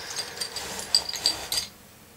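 Handling noise: rustling with a few light clicks and ticks as small objects are handled by hand, stopping about one and a half seconds in.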